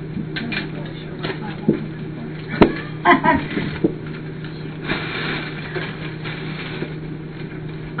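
A plastic bag rustling and crinkling as an item wrapped in it is pulled out and unwrapped. There are a few sharp knocks between about two and a half and three seconds in, over a steady low hum.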